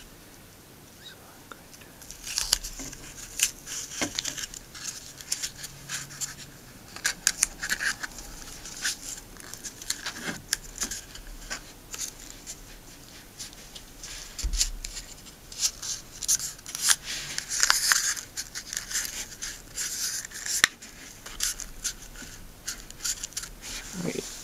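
Hands working blue tape and paper: scattered crinkling, rustling and small ticks as the tape is wrapped round a screw shank and a paper cone is rolled onto it to form a blowgun dart's flight.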